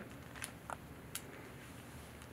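Three faint clicks of a plastic zip-lock bag's seal being pressed shut, over quiet room tone.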